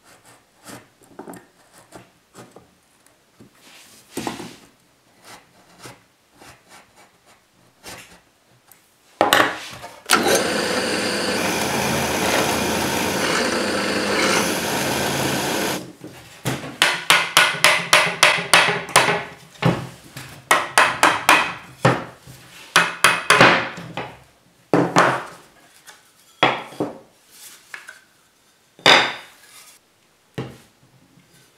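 Woodworking at a bench: faint scraping and ticks, then a power tool running steadily for about six seconds in the middle. After it come a fast run of mallet taps knocking chestnut frame pieces together, about four a second, and a few separate knocks of wood near the end.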